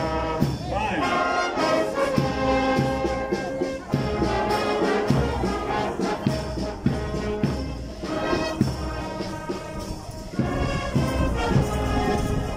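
Marching brass band of trombones and trumpets playing as it parades past.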